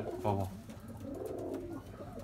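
Domestic pigeons cooing softly in a loft, a low wavering murmur that carries on after a short spoken word at the start.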